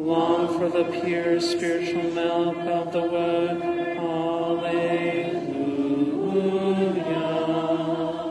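Congregation singing a slow, chant-like introit melody in long held notes, with organ accompaniment sustaining under the voices. One phrase starts right after a brief break and dies away at the end.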